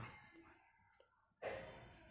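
A single breathy exhale close to the microphone about one and a half seconds in, fading off, amid near silence with a faint click just before it.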